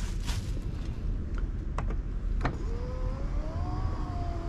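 A plastic bag crinkles, with a few light clicks. About two and a half seconds in, a small electric motor starts to whine, slowly rising in pitch: the 2019 Mercedes GLS450's power liftgate starting to move.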